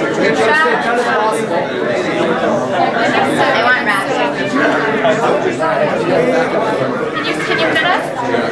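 Chatter of many people talking over one another, with no single voice standing out, in a large hall.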